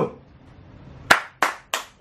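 Three sharp hand claps in quick succession, about a third of a second apart, in the second half.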